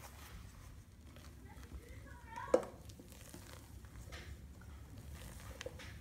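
Wooden spoon folding egg whites into a thick batter in a stainless steel bowl: soft scraping and squishing, with one sharp knock about two and a half seconds in.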